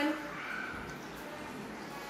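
Wire whisk stirring cocoa powder into melted butter in a glass measuring jug: a steady soft mixing sound.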